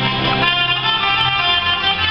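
Live Romanian folk band playing, clarinets and trumpet holding sustained melody notes over accordion and bass, with the bass note changing about a second and a half in.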